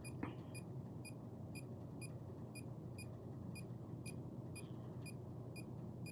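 Electronic EMF meter beeping its alarm, short high beeps about twice a second, as its magnetic-field reading shows 'High'.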